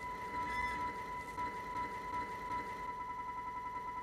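Sustained electronic drone of trailer sound design: a steady high tone with overtones over a low rumble. A fast, even pulsing joins it about three seconds in.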